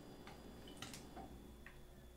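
A few faint, short clicks from a water-filled plastic juice bottle being gripped and turned upside down in the hands.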